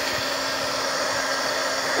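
Handheld hair dryer blowing steadily, with a low steady motor hum under the airflow. It is heating craft foam wrapped around a stick so that the foam sets into a spiral.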